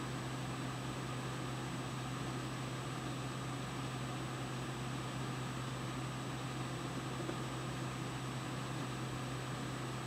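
A steady low hum under an even hiss, with a faint high steady tone, unchanging throughout.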